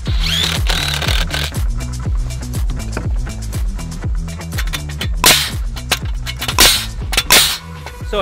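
Framing nailer firing nails into deck lumber three times in the last three seconds, three sharp shots that are the loudest sounds. Background electronic dance music with a steady beat plays throughout.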